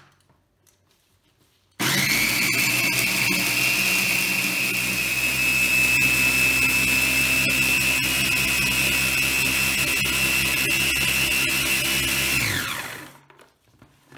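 Small electric mini chopper running, grinding dried red chillies into flakes, with a steady high motor whine. It starts suddenly about two seconds in, runs for about ten seconds, then winds down with a falling pitch near the end.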